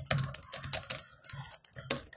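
Typing on a computer keyboard: a quick, uneven run of keystrokes, about seven a second.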